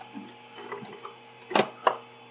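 Two sharp clicks about a quarter-second apart near the end, as a power cable's plug is pulled out of a Raspberry Pi, over a faint steady hum.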